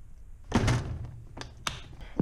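Handling noise: a dull thump about half a second in, then two short sharp clicks.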